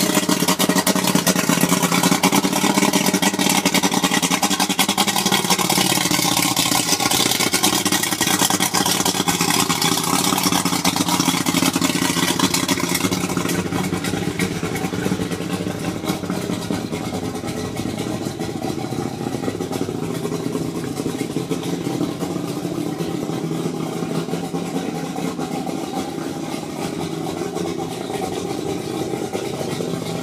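Suzuki 150 V6 two-stroke outboard motor running at idle on its trailer, just after being cranked. Its pitch wavers for the first several seconds, then it runs a little quieter and steadier.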